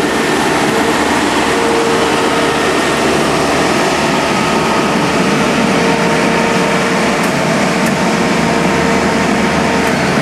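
Engines of on-track maintenance machines running steadily as they travel slowly along the rails, with a steady whine over the engine noise.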